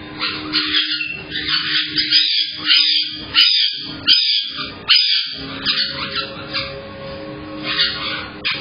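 Caique parrots giving a string of short, shrill squawks, about two a second, over a steady low hum.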